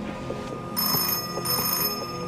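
An old desk telephone's bell ringing: two short rings in quick succession, starting just under a second in, for an incoming call.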